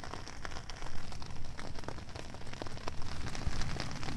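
Handling noise on a handheld phone's microphone: scattered crackles and ticks over a low steady rumble.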